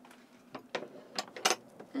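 Fold-down table being fitted into place: a handful of short, sharp clicks and knocks as its peg goes into the couch and the table is lowered, the loudest about one and a half seconds in.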